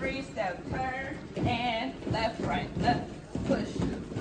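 A woman's voice calling out line-dance counts and step names as she dances the steps, with the thud of her sneakers on the stage underneath.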